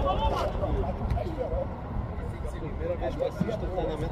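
Voices of players calling out across a football training pitch, over a steady low rumble.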